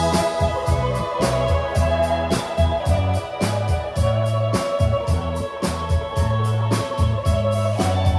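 Live band playing the opening of a song: an electric keyboard with an organ tone holds a high note over a stepping bass line and a steady drum beat, with electric guitar.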